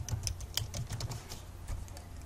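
Computer keyboard being typed on: a run of irregular, separate key clicks.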